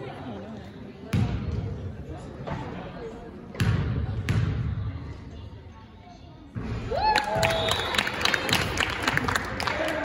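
A basketball bounced four times on a hardwood gym floor, each bounce a sharp thud ringing in the hall as the shooter dribbles before a free throw. About seven seconds in, spectators break into shouts and clapping after the shot.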